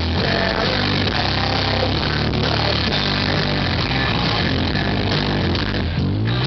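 Live rock band playing an instrumental passage between sung lines: electric guitar, bass and drums.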